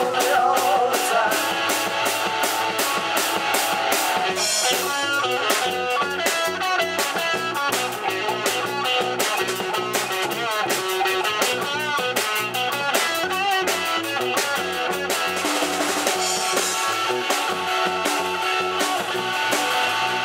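Live rock band playing an instrumental passage: electric guitars over a drum kit keeping a steady, evenly repeating beat, with no singing.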